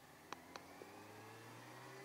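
Faint sound of a Yamaha YZF600R Thundercat's inline-four engine running, its pitch rising slowly as the bike gathers speed. Two short sharp clicks a quarter second apart come early on, then a fainter third.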